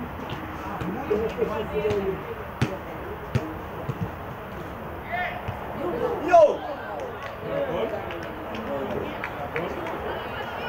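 Players' voices shouting and calling to each other across an outdoor football pitch, with the loudest shout about six seconds in. A few sharp knocks are heard in the first half, over a steady background hiss.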